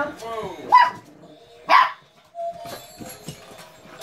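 Puppies yapping with short, sharp barks as they tug at a plush toy. The loudest bark comes a little under halfway through.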